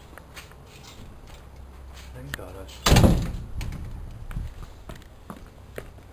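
A door slamming shut once, about halfway through: a single loud bang that dies away over a second or so.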